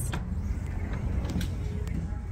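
Automatic sliding glass doors opening, with a few short clicks over a steady low rumble.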